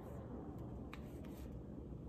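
Faint handling of a deck of tarot cards: a few soft clicks and light rustle as the cards are fanned and slid in the hands, over a low steady room hum.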